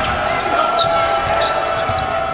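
A basketball being dribbled on a hardwood court, a few bounces, over the noise of an arena crowd. A steady pitched tone is held underneath throughout.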